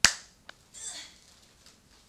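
A single sharp hand clap right at the start, with a short ring of room echo. A faint tick and a brief softer swish follow within the next second.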